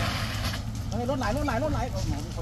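A voice talking over a steady low rumble from an idling fire engine, with a brief hiss at the start.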